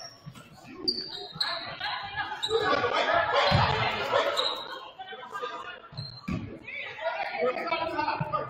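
A basketball bounced a few times on a gym's hardwood floor, low thuds that ring in the big hall, under voices of players and spectators calling out.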